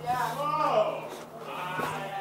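A person's voice making a drawn-out, wavering vocal sound for about the first second, with no words, then quieter.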